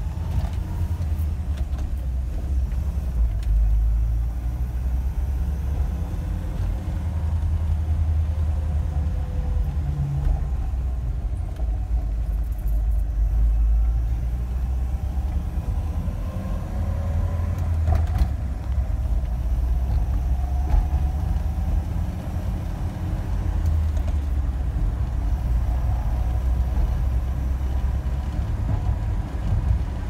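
Cab of a 1987 Isuzu Pup pickup on the move: a steady low engine and road rumble, with the engine note rising and falling several times as the truck accelerates and shifts.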